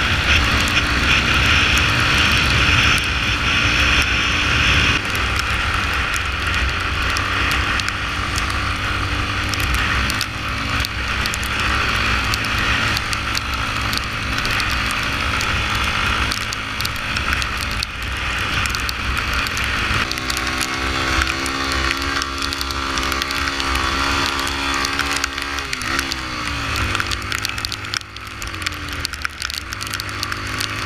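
Yamaha Lander 250's single-cylinder four-stroke engine running under way, heard through heavy wind noise on the microphone. The engine note shifts a few times, and about four seconds before the end it dips and then climbs again.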